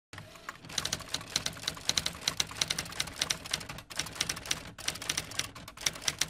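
Typewriter keystroke sound effect: rapid, irregular clicks, several a second, with a brief pause about four seconds in.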